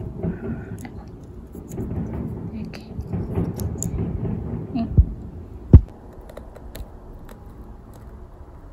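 Light clicks and rustles of empty capsule shells being handled and set into a plastic capsule-filling tray, with two dull thumps about five seconds in and just before six seconds, the second the loudest.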